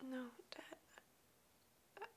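A young woman's voice: a brief, quiet murmured sound, then a few soft mouth clicks and breaths.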